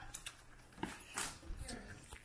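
A few faint, scattered clicks and knocks from handling an extension cord being plugged in.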